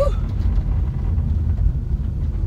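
Low, steady rumble of a car's road and engine noise heard inside the cabin, with a woman's short relieved exhale of 'fu!' at the very start.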